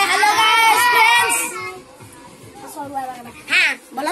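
A group of children shouting together in a loud cheer for about the first second and a half. Then it drops to scattered quieter voices, with one short shout near the end.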